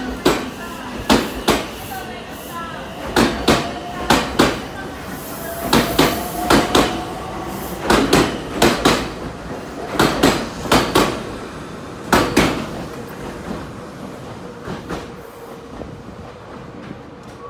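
Meitetsu express train pulling out of the station, its wheels clacking over the rail joints in quick pairs of beats as each bogie passes, about one pair a second. The clacks thin out and fade near the end as the last cars leave.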